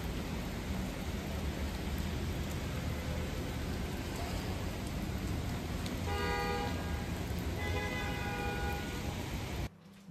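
Heavy rain falling on a city street with a low rumble of traffic. A car horn sounds twice, about six seconds in and again about a second and a half later. The rain cuts off suddenly near the end.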